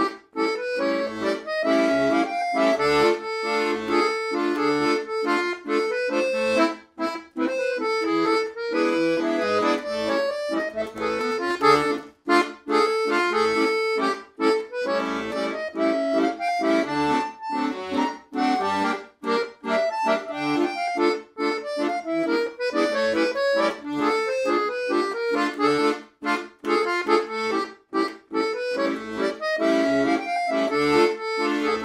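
Silvio Soprani 41-key, 120-bass piano accordion, with low and middle reeds on the treble side, playing a tune: a melody on the keys that rises and falls over a steady pulse of short bass notes and chords from the buttons.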